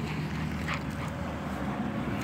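Small dog growling low and steadily while tugging on a fabric toy held in a person's hand.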